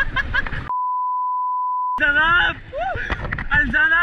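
A steady pure beep tone, an edited-in censor bleep, blanks out the sound for just over a second, a little under a second in. It is surrounded by loud voices shouting and yelling.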